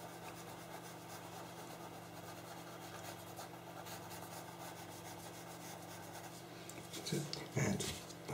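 Faint pastel pencil strokes rubbing and scratching on textured pastel paper, over a steady low electrical hum. A brief louder noise comes near the end.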